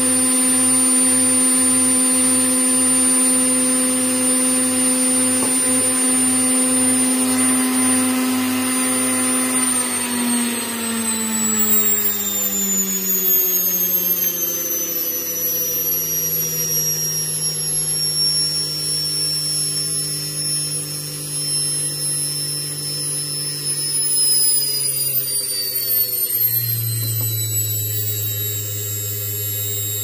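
Brushed universal motor of the washing-machine type running under a triac speed controller: a steady whine for about ten seconds, then its pitch falls in steps as the speed is turned down, settling lower near the end.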